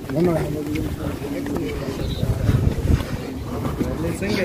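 Indistinct voices of people talking nearby, with a few low thumps about two and a half seconds in.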